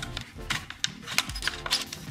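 Small plastic clicks and taps, about half a dozen, from handling a DJI Mini 2 remote controller and its removable parts, over soft background music.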